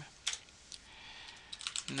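Computer keyboard keystrokes: a few separate key presses, then a quick run of them near the end as a shell command is typed.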